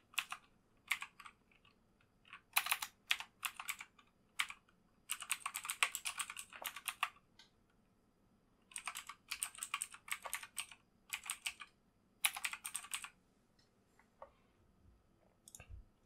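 Computer keyboard typing: bursts of rapid keystrokes with short pauses between them as a line of text is entered, then a couple of fainter single clicks near the end.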